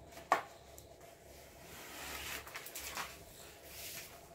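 Sheets of sticky-backed green paper being handled: a sharp click about a third of a second in, soft rustling, and a fainter click about three seconds in.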